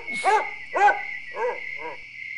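A dog barking four short times, about half a second apart, over a steady high tone.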